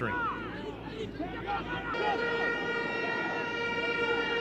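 Stadium crowd noise, then about halfway through a horn in the stands sounds one long, steady note that is held through the rest.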